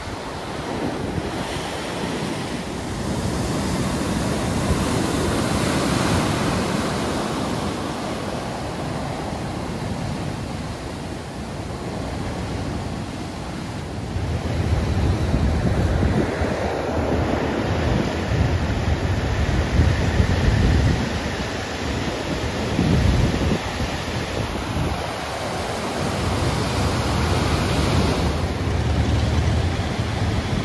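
Rough sea surf: waves breaking and washing in foam over a stony shore and against a concrete harbour wall, a continuous rushing noise that swells with each set. From about halfway through it grows louder, with wind buffeting the microphone in low gusts.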